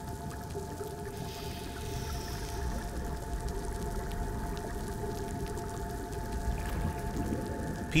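Underwater crackling of a living coral reef: a dense, steady patter of tiny clicks and pops. It is the sign of a healthy reef, with fish feeding and corals growing.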